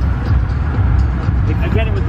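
Low, steady rumble of a car engine running, with people's voices starting near the end.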